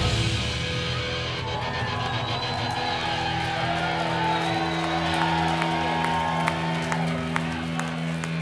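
Electric guitar and bass left ringing on a held final chord through the amps after the song ends, with the crowd cheering and whooping over it. The held notes stop just before the end.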